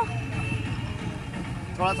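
Steady low rumble of street traffic, with engines running nearby.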